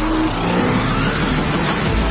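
A motorcycle engine revving and passing by over background music, its pitch rising through the middle.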